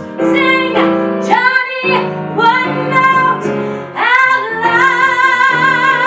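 A woman singing a song live into a microphone to piano accompaniment. From about four seconds in she holds one long note with vibrato.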